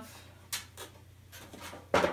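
Objects being handled on a metal storage cart: a few faint scrapes and light taps, then a sharp knock near the end as something hits the cart.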